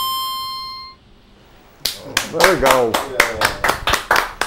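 A harmonica holds its final note, which fades out about a second in. After a short pause, a small group starts clapping in a steady rhythm, about four claps a second, with a voice calling out over the claps.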